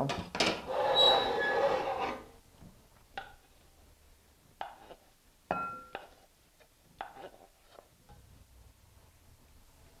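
Wooden spoon scraping stir-fried vegetables out of a wok into a glass bowl, loudest over the first two seconds or so. Then come a few scattered clinks and knocks of spoon, wok and bowl, one ringing briefly about halfway through.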